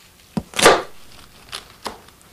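Kitchen knife chopping through a bunch of flower stems onto a wooden cutting board. The strokes come as a sharp knock and then a heavier, longer chop about half a second in, followed by two lighter knocks near the end.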